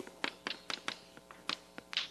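Chalk on a blackboard while words are written: a quick, irregular run of sharp taps and short scrapes as the chalk strikes and drags across the slate.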